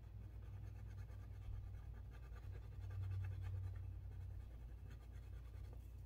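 Wax crayon colouring on paper: a faint run of short, scratchy back-and-forth strokes, over a low steady hum.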